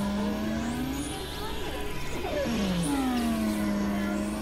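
Experimental synthesizer drone: a pitched tone with overtones slides down, levels off and curves back up, repeating about every three seconds over a noisy, buzzing bed, with short falling swoops between.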